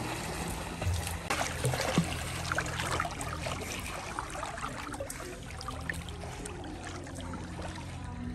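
Pool water splashing and lapping as children swim, with small splashes coming thickest in the first three seconds and thinning after, over a low steady hum.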